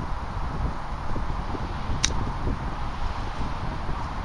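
A single sharp click of an iron striking a golf ball on a short approach shot to the green, about halfway through, over steady wind rumble on the microphone.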